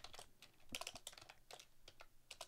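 Faint typing on a computer keyboard: scattered, irregular keystrokes.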